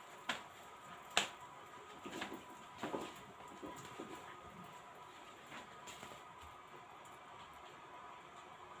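Quiet room tone with a faint steady hum. A few light clicks and knocks fall in the first half, the sharpest about a second in.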